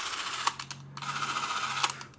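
Braun 400 Super 8 camera's electric drive motor running the shutter mechanism with no film loaded, in two short runs. Each run starts and stops with a click, and there is a pause of about half a second between them.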